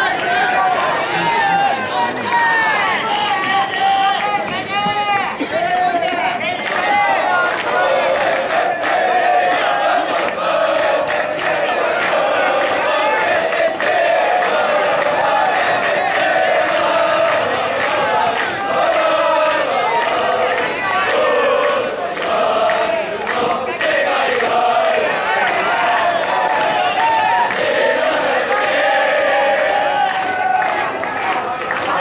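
A crowd of spectators chanting and shouting in unison, as a school cheering section does for its batting team, over a steady beat.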